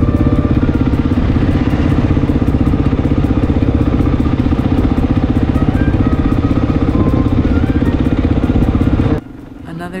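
Single-cylinder engine of a Honda XR dual-sport motorcycle running steadily at cruising speed, with an even pulse. It cuts off suddenly near the end.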